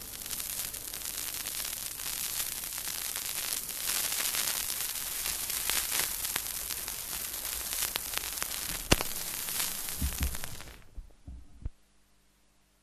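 Record surface noise between songs: a steady hiss with scattered clicks and crackle, one sharper click about nine seconds in. It cuts off suddenly about eleven seconds in, followed by a few low thumps.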